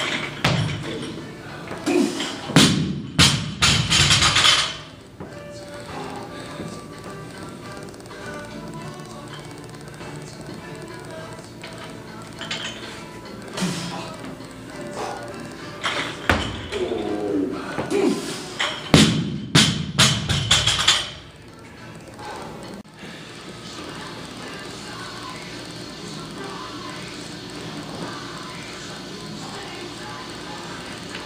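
A loaded barbell with bumper plates is set down hard on a wooden lifting platform twice, each time as a quick run of heavy thuds as the plates bounce and rattle. This happens about two seconds in and again around the twentieth second, over steady background music.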